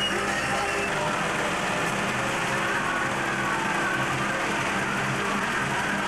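A tractor engine running steadily as it tows a carnival float, mixed with the chatter of a crowd of onlookers.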